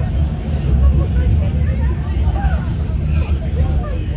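Bombardier M5000 tram running, a steady low rumble heard from inside the passenger car, with passengers' voices chattering faintly over it.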